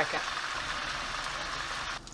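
Chicken wings frying in a skillet of hot oil and butter: a steady sizzle of bubbling oil.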